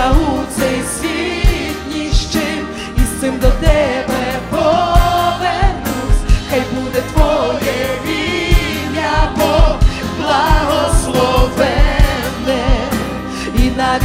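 A live worship song: a woman singing into a microphone over a band with acoustic guitar and a steady beat.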